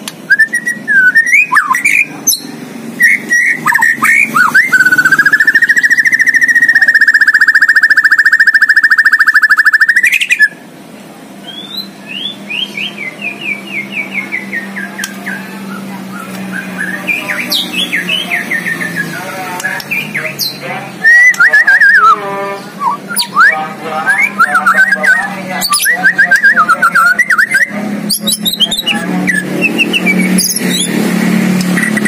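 White-rumped shama (murai batu) singing loudly: a varied song packed with mimicked phrases (isian), opening with short chirps, then a long steady trilled note held for about six seconds that stops abruptly, followed by a quick falling run of short notes and more varied phrases.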